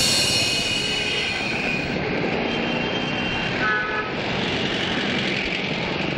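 Street traffic noise: a steady rumble and hiss of passing vehicles, with a short horn toot a little after the middle.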